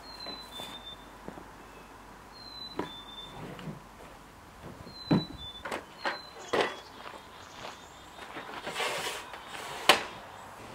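Knocks and clunks of a tool case and gear being set down and handled at a miter saw stand. There are several in the middle of the stretch and a sharp click near the end.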